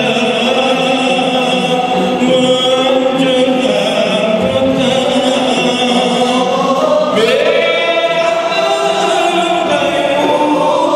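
Male voices singing a qasidah song together, with long held notes that slide between pitches.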